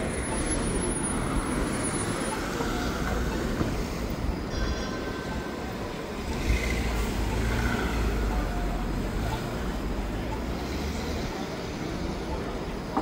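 Articulated Bombardier Flexity Outlook streetcar rolling through an intersection on its rails, its low rumble strongest in the middle of the stretch as it passes close by, over steady city traffic noise.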